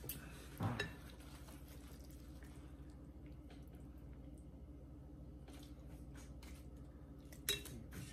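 Faint clinks and scrapes of a silicone serving utensil against a glass mixing bowl as noodles are lifted out and served, with a sharper knock just under a second in and another near the end. A low steady hum runs underneath.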